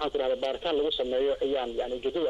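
Speech only: a voice talking continuously, with no other sound standing out.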